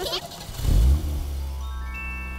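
Cartoon car engine running as a steady low hum, with a louder low rumble about half a second in. Soft held musical tones build up in the second half.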